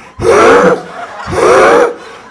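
A man's voice making two loud, strained, wheezing gasps, each about half a second long, acting out someone struggling to breathe under heavy weight.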